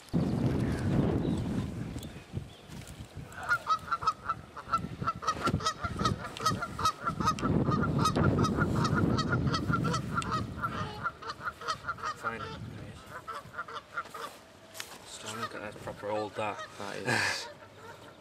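Geese honking in a rapid, steady run that begins a few seconds in and thins out toward the end, over rustling and dripping water as a landing net with a carp in it is lifted out of the water onto an unhooking mat.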